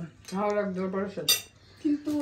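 A single sharp clink of metal cutlery against a plate, a little past the middle, after a brief vocal sound.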